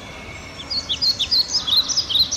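A bird chirping rapidly, a short bright chirp repeated several times a second, starting about two-thirds of a second in.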